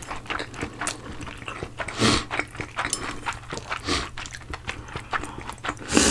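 Close-miked eating sounds of two people chewing noodles: wet smacks and mouth clicks, with two louder noisy bursts about two seconds and four seconds in.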